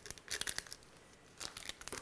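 Small scissors snipping open small packets of powdered drink mix, with paper crinkling, in two short bouts: about a third of a second in and again near the end.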